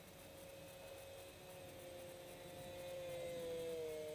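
Twin electric motors and pusher propellers of a foam RC Su-37 model jet whining in flight: a faint steady tone that grows louder as the plane approaches and drops slightly in pitch near the end. The motors are held at high RPM to keep speed, since the broken canard linkage has stalled the wing and left it with no control when slow.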